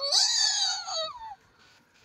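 A young child's drawn-out, high-pitched squeal that slides down in pitch and stops about a second and a half in.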